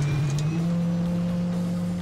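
Helicopter starting up, its main rotor beginning to turn: a whine that rises in pitch for about half a second, then settles into a steady hum.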